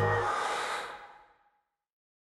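A soft, breath-like hiss that fades away over about a second, then complete silence.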